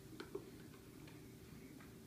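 Faint clicks and taps of a spoon against a small plastic bowl as baby cereal is scooped up: two small clicks close together near the start, then a few fainter ticks.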